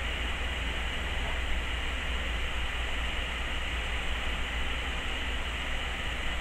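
Steady hiss with a low hum, unchanging throughout: background noise, with no distinct sound from the brushwork.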